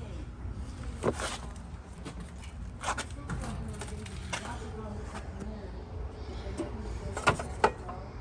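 Scattered clicks and knocks of hands working on an outdoor air-conditioning condenser and its metal electrical disconnect box, with two sharper knocks near the end as the disconnect cover is handled, over a steady low background rumble.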